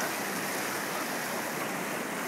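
Steady rush of turbulent white water churning through the concrete channel of an artificial whitewater slalom course.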